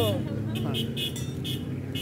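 Brass hand bell being jiggled lightly, a faint high ringing that recurs every few tenths of a second, over the steady low hum of an idling motor vehicle.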